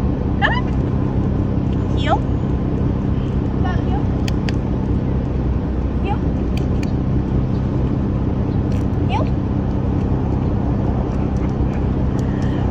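Steady low hum of an idling engine. A few brief, faint rising voice-like chirps come every couple of seconds over it.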